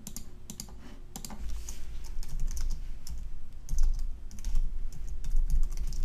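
Typing on a computer keyboard: quick keystrokes in irregular runs as a terminal command is entered, with a low rumble underneath from about a second and a half in.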